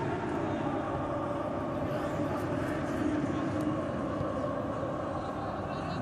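Live match sound from a football pitch with empty stands: a steady hum of ambience with faint, distant players' voices and a few soft knocks.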